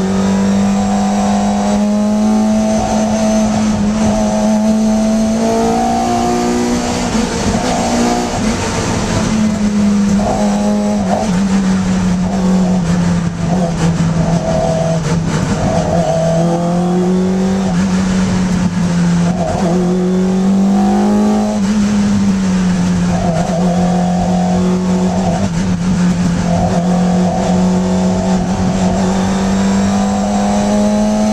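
Racing Hillman Imp's 1150cc rear-mounted four-cylinder engine running hard at racing revs, heard from inside the cabin. The note climbs under acceleration and drops back twice, about eight and twenty-two seconds in, then climbs again near the end.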